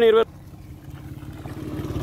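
An engine running, with a steady low pulsing that grows gradually louder.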